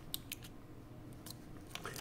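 Faint, scattered crinkles and ticks of thin protective plastic film being handled in gloved fingers.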